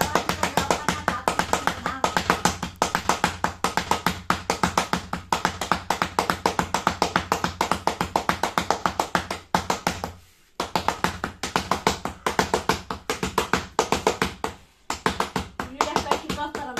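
Rotti dough being patted flat by hand on a board: rapid, even slaps of the palms at about six or seven a second, stopping briefly twice, about ten seconds in and near the end.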